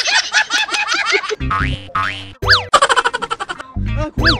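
Cartoon-style comedy sound effects over background music: a burst of chirping squeaks, then two rising sweeps, a boing, and a quick rattle of fast even clicks near the end.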